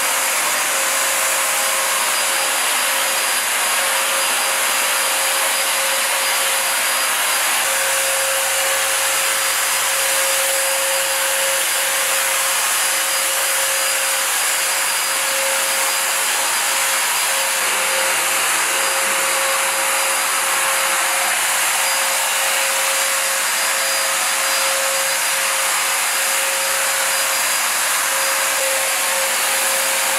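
Handheld electric ULV cold fogger running while spraying disinfectant mist: a steady blower whir with a constant whine over it.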